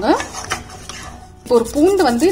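Wooden spatula stirring and scraping in a metal pan of thin broth, with a few light knocks against the pan, for about the first second and a half. A voice comes in near the end.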